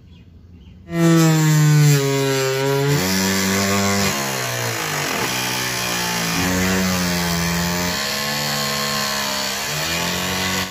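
Homemade bench-top table saw's circular blade cutting a strip of PVC sheet, starting suddenly about a second in. The motor's pitch dips and recovers repeatedly as the plastic is fed through the blade.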